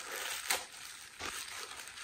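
Plastic mailer bag crinkling and rustling as it is slit open with a box cutter, with two sharper crackles.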